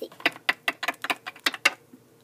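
Small plastic toy figures clacking against a plastic toy car as they are jiggled in place: a quick, uneven run of about nine sharp clicks over a second and a half that stops near the end.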